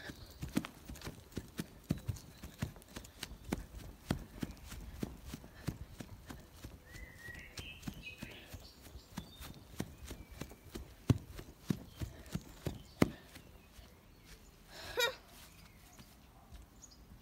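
Clip-clop of galloping horse hoofbeats, a quick run of sharp hoof strikes about three or four a second, made to go with a toy horse's gallop. A brief louder sound comes near the end.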